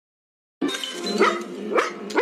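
Bull terrier barking, a run of barks beginning about half a second in, several of them rising sharply in pitch.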